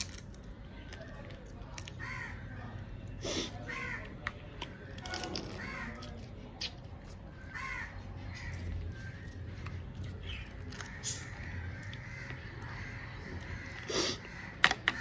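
Crows cawing repeatedly in short harsh calls. A few sharp clicks and crunches of crab shell come through as the crab is eaten.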